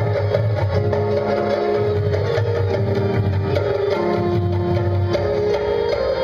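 Live instrumental music on electronic keyboard and hand drums, with held chords that change about once a second over a steady low bass.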